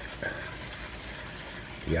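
Small wire whisk stirring wet sugar and corn syrup in a pan, over a soft, steady hiss.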